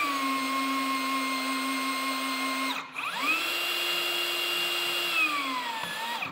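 Metabo HPT cordless rebar bender/cutter's electric motor whining as it drives its bending head round to make a 180-degree bend in a steel rebar. It runs steadily for nearly three seconds, breaks off briefly, then runs again at a higher pitch and winds down with a falling pitch near the end.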